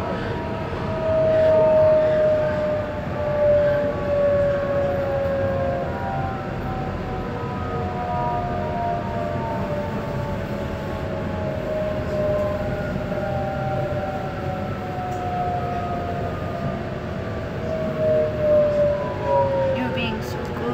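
Electric train's traction motors whining in several tones that glide slowly down in pitch as the train slows, over the steady rumble of the carriage.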